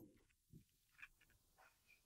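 Near silence: room tone, with two faint ticks about half a second and a second in.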